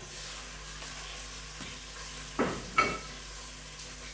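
Pieces of lamb sizzling in hot oil in a stainless steel pot, a steady hiss. Two sharp knocks about half a second apart come a little past the middle.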